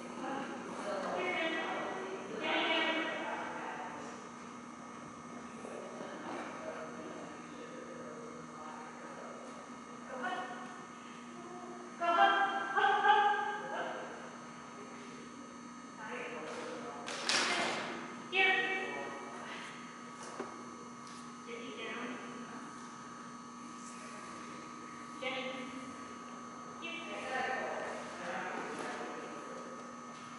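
Short, scattered voice calls of a handler cueing a dog through an agility run, with a single thud about two-thirds of the way through and a steady electrical hum underneath.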